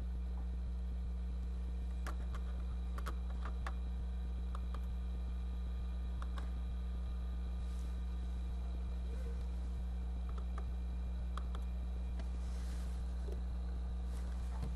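Room tone: a steady low hum with a few faint, scattered clicks and taps.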